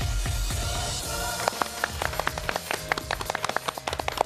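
Short theme-music sting with a thumping beat, then from about a second in a small group of people clapping their hands over the fading music.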